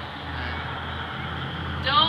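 A steady low background rumble, with a voice saying "beer" at the very start and faint talk under it.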